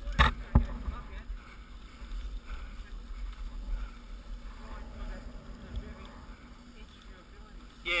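Mountain bike rolling down a loose dirt and gravel trail, heard from a camera on the rider: a steady low rumble of tyres and bike over the rough ground. There is a sharp knock about half a second in.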